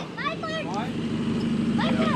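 Toyota Hilux engine running steadily at low revs, with faint voices over it.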